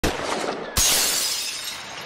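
Shattering sound effect: a crash at the start, then a louder smash about three-quarters of a second in that fades away.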